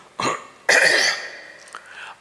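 A man clearing his throat close to a microphone: a short sound, then a louder, rough one that fades over about a second.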